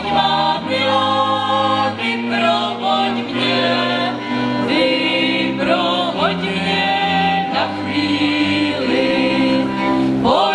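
Czech folk song sung by several voices in harmony, with fiddles and a double bass. The chords are held long and change about every second, over a low bass line, with a few quick upward slides in pitch.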